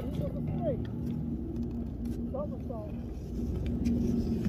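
Short, high excited shouts from people sledding, one about half a second in and another about two and a half seconds in, over a steady low rumble of a sled sliding over packed snow.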